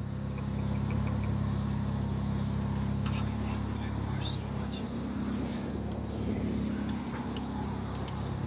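A steady low mechanical hum, with a few faint clicks of hand tools and metal parts as spark plugs are worked loose in a truck's engine bay.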